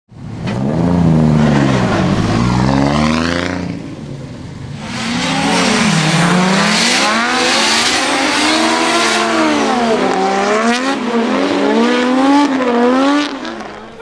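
Nissan S15 drift car's RB30 straight-six engine revving hard, its pitch rising and falling over and over as the car drifts. The level drops briefly about four seconds in.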